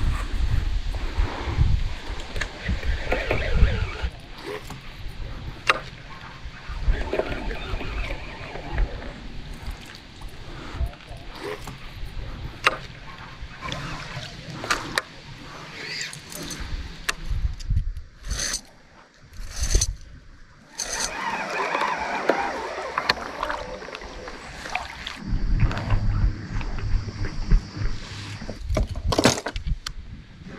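Sound of fishing from a kayak: wind rumbling on the microphone and water against the hull, with scattered clicks and knocks from handling the rod, baitcasting reel and gear.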